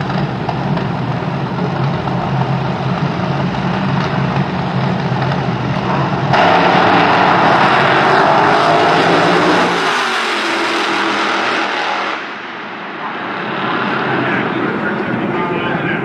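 Two Top Alcohol Dragsters' engines running steadily on the starting line, a low drone. About six seconds in they launch at full throttle with a sudden, much louder blast that holds for about six seconds, then drops away abruptly. The engine sound builds again near the end.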